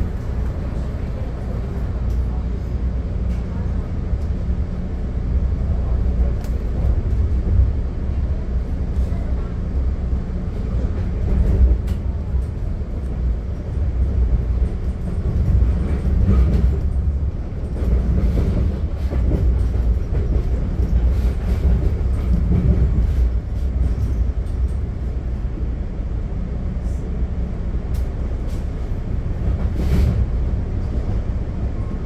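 Inside a 1962 Budd gallery commuter car moving along the line: steady low rumble of the car's wheels on the rails.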